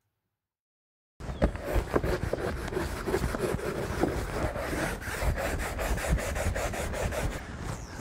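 Long-handled deck brush scrubbing a sailboat's deck, a quick run of scraping bristle strokes that starts about a second in.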